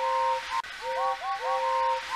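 Several steam locomotive whistles at different pitches tooting together in quick, repeated short blasts, each blast sliding up into a held note.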